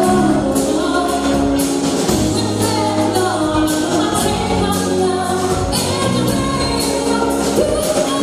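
Live band playing a song with sung vocals over sustained chords and a steady drum beat.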